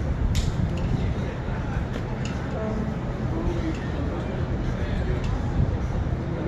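Outdoor ambience: a steady low rumble with faint, indistinct voices of people nearby and a few short sharp clicks.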